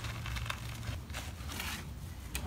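Gloved fingers pressing and working pumice-rich potting mix around a plant's trunk in a plastic pot: faint, scattered crackling and crunching of the gritty soil.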